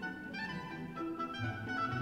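Orchestra playing ballet music, a 1962 analogue studio recording. Held melodic notes sound over the ensemble, and a low bass note comes in about halfway through.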